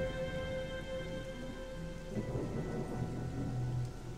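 Soft background music of held, sustained chords over a steady rain-like hiss and a low rumble.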